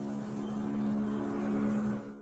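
A steady machine hum, like an engine or motor running, holding one even pitch with a hiss above it.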